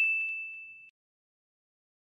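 A single high, bell-like ding sound effect ringing out and fading away within about the first second.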